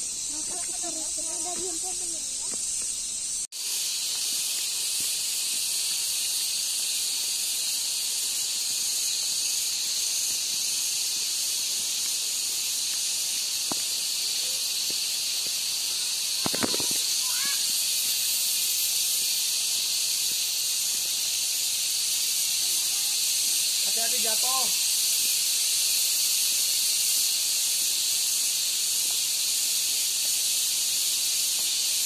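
Steady high-pitched insect chorus filling the forest, an even hiss with no low rumble. It breaks off for a moment about three seconds in, then carries on. Faint voices come through once or twice, and there is a single knock about sixteen seconds in.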